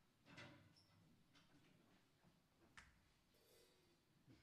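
Near silence: room tone with a few faint scattered clicks and rustles.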